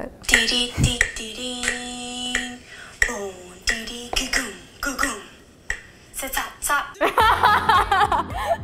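A woman's own vocal soundtrack for a dance, played back from a phone: sung "dee dee" syllables, one held note and sharp mouth clicks keeping a beat. A woman laughs at the start and again near the end.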